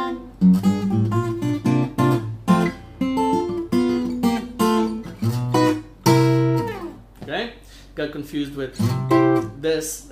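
Steel-string acoustic guitar (a Takamine) played fingerstyle: a bluesy passage of picked chords over a thumbed bass line, with a downward slide about six seconds in.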